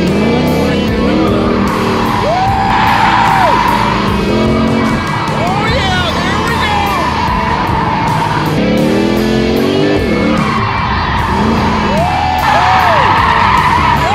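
Music with a steady beat over a Ford Mustang Shelby GT500's supercharged V8 revving up and down as the car drifts, its tyres squealing in long stretches.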